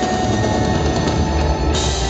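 Live instrumental heavy rock on amplified cellos over a drum kit, with a steady pounding beat and sustained bowed lines, heard from within the concert audience.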